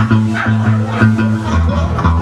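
Live rock band playing electric guitar and bass guitar, the bass holding low notes that change about one and a half seconds in.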